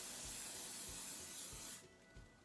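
Aerosol shine hairspray, Wella Glam Mist, spraying onto hair in one continuous hiss that cuts off shortly before the end.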